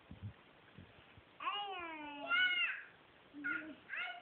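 A young girl's high, wordless sing-song voice. About a second and a half in comes one long note that glides down and then jumps higher, followed by a short call near the end, with a few faint knocks in the first second.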